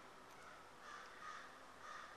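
Faint bird calls in near silence: a few short calls about half a second apart.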